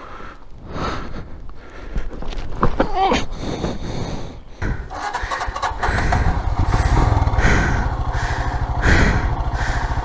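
Royal Enfield Himalayan's single-cylinder engine started about halfway through, then idling steadily with an even beat.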